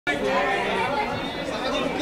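Chatter of several people talking at once, their voices overlapping with no single speaker standing out.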